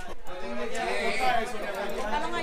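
Several people talking over one another at once: the steady chatter of a small party crowd, with no single voice clear.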